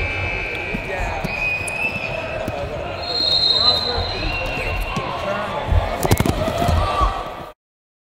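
Wrestling-gym din of indistinct voices with long, high squeaks and scattered low thuds of bodies on the mat. A cluster of sharp thumps comes about six seconds in as a wrestler is thrown to the mat. All sound cuts off suddenly near the end.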